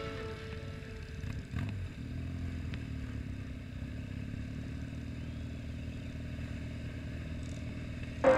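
BMW R nineT motorcycle riding at a steady, moderate speed: a low, even engine hum with road and wind noise, its pitch wavering only slightly. A brief knock sounds about one and a half seconds in.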